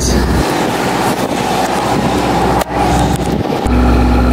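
A dive boat's engine running with a steady hum, under a low rumble that falls away about half a second in and comes back near the end. A single knock about two and a half seconds in.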